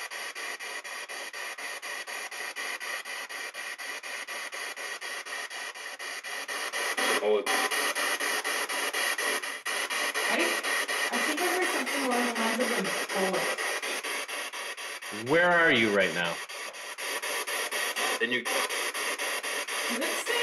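A steady hiss with a fast, regular pulse runs through. From about seven seconds in, faint, indistinct voices come through it, with a louder, wavering voice sound at about fifteen seconds.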